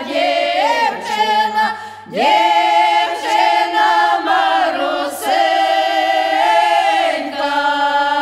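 A group of eight women singing a Ukrainian folk song a cappella in parts, with long held notes. The voices dip briefly about two seconds in and slide up into the next phrase.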